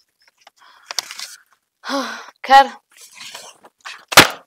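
Two short vocal sounds from a person, about half a second apart, too brief for words. Faint rustling of handled paper and a click come before them.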